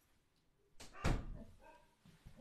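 A door closing with a thud about a second in.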